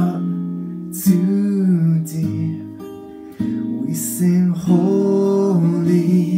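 A man singing a slow worship song to his own strummed acoustic guitar.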